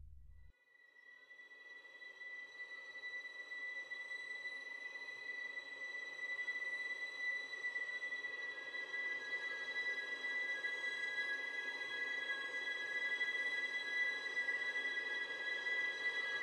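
Eerie ambient score music: several sustained high ringing tones over a noisy wash, fading in after a low rumble cuts off about half a second in and slowly growing louder, with a new lower tone joining about halfway through.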